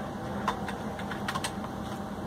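Fingers pressing the buttons of an eSSL x990 biometric attendance terminal: a series of short, light clicks, the loudest about half a second in, over steady background noise.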